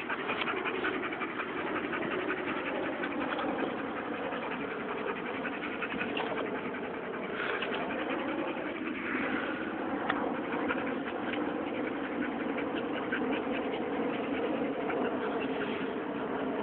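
A dog panting, with a steady hum underneath.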